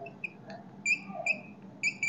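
Chalk squeaking on a blackboard during writing: several short, high squeaks, the clearest about a second in and near the end.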